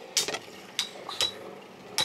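Metal Beyblade spinning tops Hell Beelzebub and Thief Phoenix clashing as they spin against each other in a plastic stadium: several sharp metallic clinks, a few with a brief ring.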